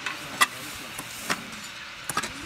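Irregular sharp clinks and knocks of building work, four in two seconds with the loudest about half a second in, over a steady background hiss.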